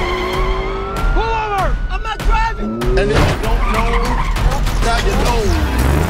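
Car tyres squealing in several rising-and-falling screeches as a car skids round corners, with an engine revving, a few sharp knocks and a low rumble, over a film score.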